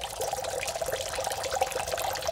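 A steady trickle of running or pouring water.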